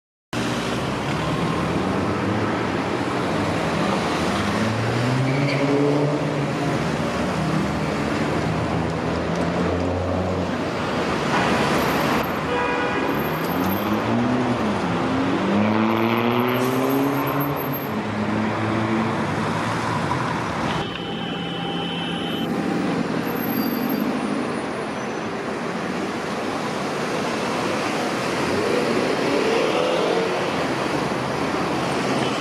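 Busy city-square traffic with buses and trolleybuses passing, their motors giving a whine that rises and falls as they pull away and slow. A steady high tone sounds for about two seconds past the middle.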